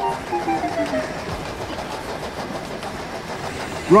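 A passenger train rushing past on the adjacent track. A two-toned note falls in pitch over about the first second as it goes by, followed by the steady rolling noise of the carriages on the rails.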